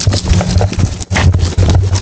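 Footsteps and pushchair wheels crunching on a gravel path, an uneven run of crunches over a low rumble.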